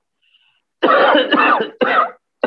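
A man coughing hard several times in quick succession, starting about a second in after a moment of quiet.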